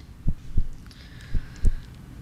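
A quiz show's suspense cue during a contestant's thinking time: low, heartbeat-like thumps in pairs about once a second, with a faint held tone behind them.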